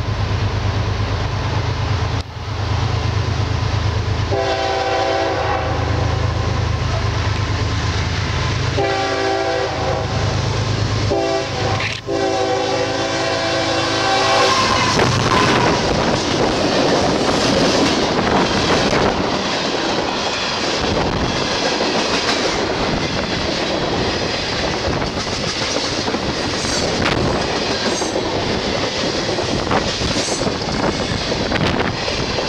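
Approaching freight train's diesel locomotive sounding its multi-note horn in the grade-crossing signal, two long blasts, a short and a long, over its engine's low rumble. It then passes close by, and the rumbling clatter of tank cars and hopper cars going by follows.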